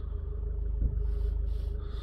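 Toyota Urban Cruiser's diesel engine idling steadily, heard from inside the cabin as a low rumble with a steady hum. A single short thump comes a little under a second in.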